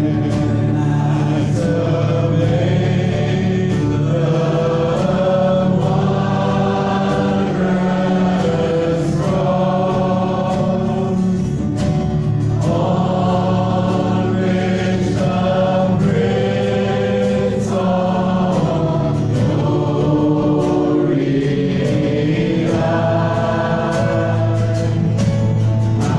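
Live gospel worship song: a man and a woman singing over acoustic guitar, electric guitar and a drum kit, with steady drum and cymbal strokes through it.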